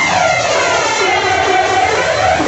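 Loud club dance music at a breakdown with the bass drum dropped out: a whooshing sweep effect, like a jet passing, falls steadily in pitch over the sustained sound.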